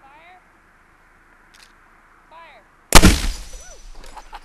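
Civil War cannon firing once about three seconds in: a single sudden, very loud blast that dies away over about a second with a trailing echo.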